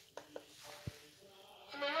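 A few light clicks and a knock from handling the upturned robot vacuum. Near the end the robot vacuum's recorded voice prompt starts speaking the word "uneven" of its floor-uneven error.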